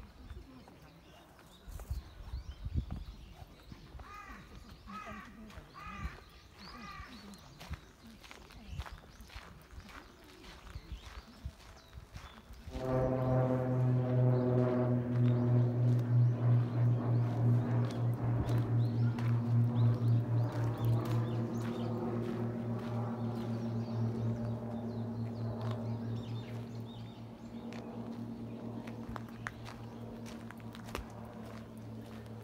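A crow caws about four times. About thirteen seconds in, a large bell is struck once and hums on with a slow, wavering decay, its higher ringing fading first and the low hum lasting to the end.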